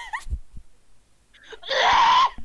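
People groaning: a short moan dies away at the start, then a louder, breathy groan begins near the end.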